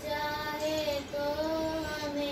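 A young girl singing a prayer solo: two long, held phrases with a slight waver in pitch and a short breath between them about a second in.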